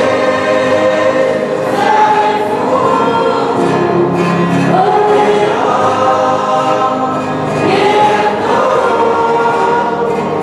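A group of singers singing a farewell song together, moving through long held notes that step up and down in pitch.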